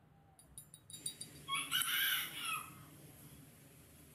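A few light metallic clicks as two wood screws are set down on a rubber mat, then a loud, harsh bird call lasting about a second, starting about a second and a half in.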